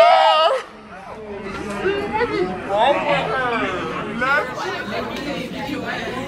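A long high-pitched squeal from a girl ends about half a second in, followed by several teenagers' voices chattering and laughing over one another.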